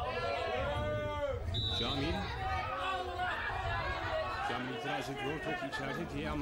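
Voices calling out and chattering on a football pitch during play, with a short, high whistle blast about one and a half seconds in.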